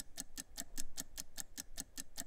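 Rapid, even ticking from a countdown-clock sound effect, about seven ticks a second, running under a 30-second auction price clock.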